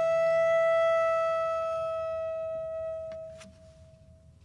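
A single high sustained note from an acoustic instrument, holding one pitch and slowly dying away. Its upper overtones fade out a little after three seconds, leaving the bare note ringing faintly at the end.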